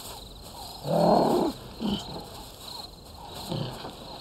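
A low animal grunt about a second in, followed by two shorter, softer grunts, with faint bird chirps in the background.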